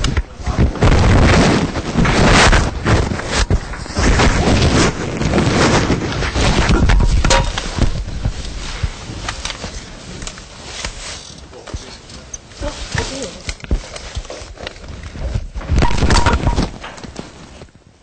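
Rustling, knocks and thumps of equipment being handled close to the microphone, with indistinct voices; the noise is loudest in the first half and dies away toward the end.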